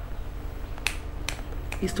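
Two short, sharp clicks about half a second apart over a low steady hum. A woman starts speaking again near the end.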